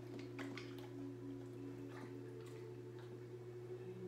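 A dog paddling in a swim-spa pool, with a few light splashes and clicks of water. Under it run a steady low hum and soft, slow, sustained music tones.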